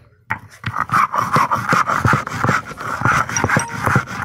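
Hand grinding stone (lorha) rubbed back and forth over a flat stone slab (sil), crushing grains for chaisa: a rough, rasping scrape repeated about three times a second, starting a moment in.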